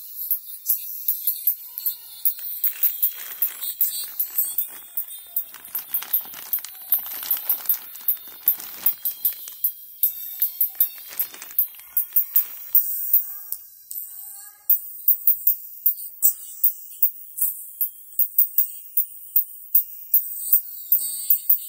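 Music played through a pair of paper-cone tweeters driven through a series capacitor, so almost only the treble comes through: a thin, bright sound of sharp tambourine-like percussion hits several times a second. For a few seconds in the middle, a plastic bag rustles.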